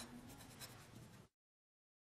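Faint scratching of a pen on paper, stopping a little over a second in.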